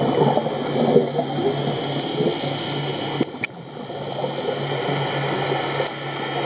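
Underwater sound recorded by the diver's camera: a gurgling, crackling wash of exhaled scuba bubbles over a steady low hum. There is a short click and a brief lull about three seconds in.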